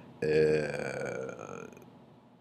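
A man's drawn-out hesitation sound, one held 'uhh' at a steady pitch lasting about a second and a half and fading out.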